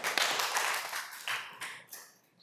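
Audience applause, many hands clapping at once, loudest at first and fading away over about two seconds.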